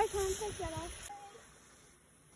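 A person's voice speaking briefly in the first second, then fading to near silence.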